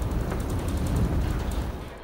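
Low, steady rumbling noise with faint light rattles, heard in a building during an earthquake as ceiling-mounted studio lights sway on their rig.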